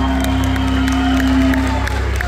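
Live Argentine folk band holding a closing chord on acoustic guitars and bass; the held note stops near the end. The audience cheers, whoops and claps over it.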